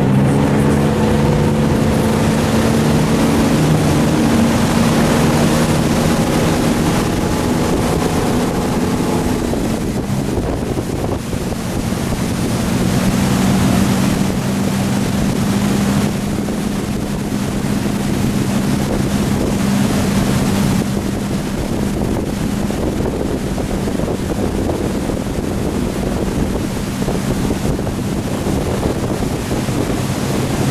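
Inboard engine of a Tige wakeboard boat under load, towing a rider up and along. Its note changes about ten seconds in, then holds steady, under gusting wind noise on the microphone and the rush of water.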